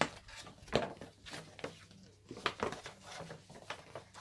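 A large folded paper poster being unfolded by hand: irregular rustles and short crackles of stiff paper.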